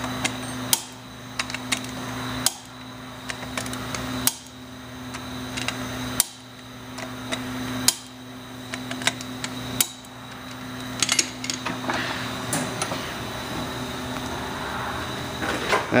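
Wrench torquing the end-plate bolts of an F25 gear pump to 40 ft-lb: six sharp metallic clicks roughly every two seconds, with lighter ticks between, then a quicker run of clicks about eleven seconds in, over a steady hum.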